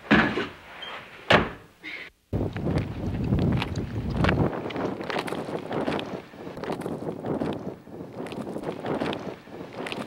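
A door knocks twice in the first second or so. After a sudden cut, a steady rustling, rumbling noise follows, made by someone moving fast through brush, with wind buffeting the microphone.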